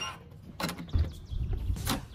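A hotel key-card door lock gives a short electronic beep as it unlocks, followed by the clicks and thuds of the latch and handle as the door is opened.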